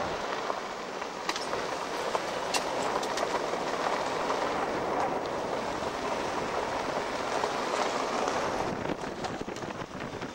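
Steady road and wind noise of a vehicle driving along a forest road, with a few faint clicks.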